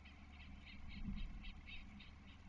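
Ospreys chirping faintly at the nest: a quick run of short, high chirps, about five or six a second, over a low steady rumble.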